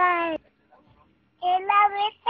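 A young child's high-pitched, drawn-out vocalising: two long held sounds with a pause of about a second between them.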